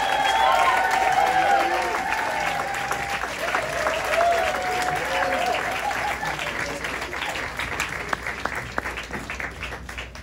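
Crowd and band applauding and cheering, with whoops and calls riding over the clapping for the first several seconds. The applause then slowly dies away.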